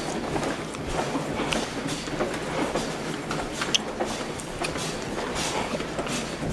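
Footsteps and the rustle and knock of carried bags as people walk along a carpeted hallway, over a steady rumbling noise with scattered small clicks.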